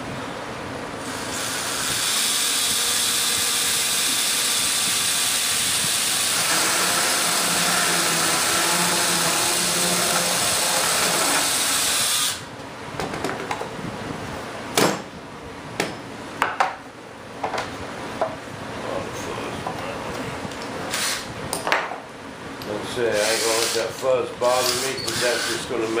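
DeWalt cordless drill boring through the wall of a kevlar composite fuel tank, running steadily for about eleven seconds and then stopping suddenly. A few sharp knocks follow.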